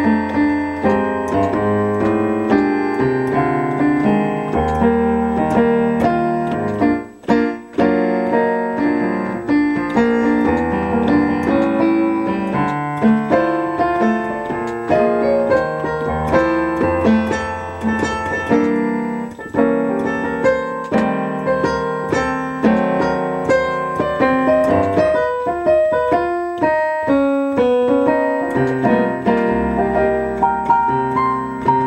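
Solo piano played on a digital keyboard: low bass notes and chords under a melody line, playing continuously, with a brief break about seven seconds in.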